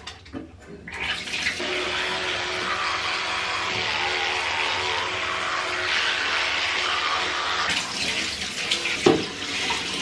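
Bathroom tap running into a sink, starting about a second in and shutting off just before eight seconds in, followed by a single knock.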